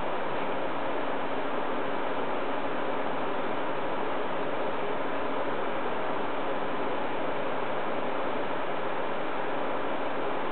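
Steady background hiss with a faint low hum underneath, unchanging throughout, with no other event.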